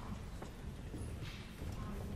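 Hushed concert-hall pause: a low, steady room rumble with a few faint, scattered knocks and taps, the small stage and audience noises heard between pieces.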